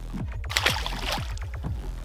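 Background music with a steady beat; about half a second in, a short splash as a released crappie drops into the lake.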